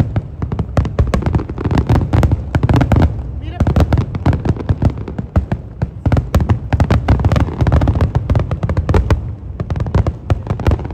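Large aerial fireworks display: a dense, unbroken barrage of bangs and crackles from many shells bursting at once, with deep booms underneath.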